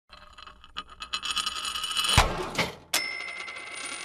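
Intro sound logo: metallic clinks that start sparse and thicken into a dense jingle, a sharp thump about two seconds in, then a bright bell-like ding about three seconds in that rings out.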